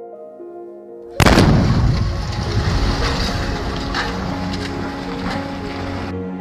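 A house blown up with explosives: a sudden, very loud blast about a second in, then a long rumbling decay with a few sharp cracks, cut off abruptly at the end. Soft background music plays underneath.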